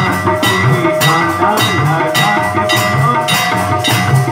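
Devotional aarti music with drums and percussion keeping a steady beat, about one and a half strokes a second, over sustained tones, with hand clapping on the beat.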